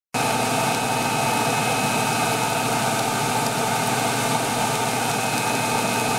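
Small shop dust collector's blower running steadily, air rushing through its 4-inch flex hoses, with a faint steady whine over the rushing noise.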